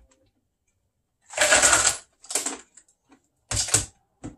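Three short bursts of plastic clattering and knocking at a countertop blender jar and its lid as it is handled, the first the longest and loudest.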